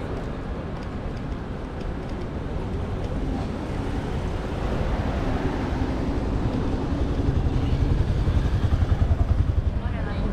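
Street traffic: a motor vehicle passing close by, its low rumble building and loudest over the last few seconds.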